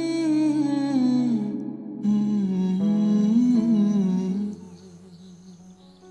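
A voice humming a slow, wavering melody over a steady low sustained tone, with a short break about two seconds in. It drops to a much quieter background about four and a half seconds in.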